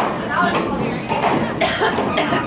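Indistinct chatter of spectators close to the microphone, with a short noisy burst near the end.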